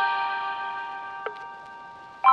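Bell-like chime chord of several notes ringing and slowly fading, with a light tick about a second and a quarter in.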